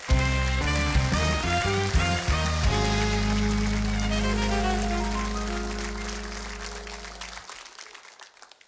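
Television house band playing a short walk-on music cue: a run of quick bass notes, then one held chord that fades away near the end. A steady hiss of studio-audience applause runs underneath.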